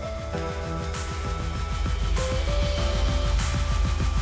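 Background music: an electronic track with held notes and a steady beat.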